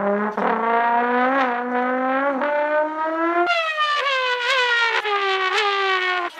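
Trombone imitating a racing car's engine at full volume: one sustained buzzy note glides slowly upward with a brief dip about once a second, like revs rising through gear changes. About three and a half seconds in it leaps higher and then slides slowly down.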